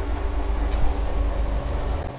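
A loud, steady low rumble with a few faint rustles on top. It cuts off suddenly near the end.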